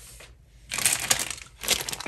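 A thin plastic zip bag of wax melts crinkling as it is picked up and handled, starting a little under a second in and again just before the end.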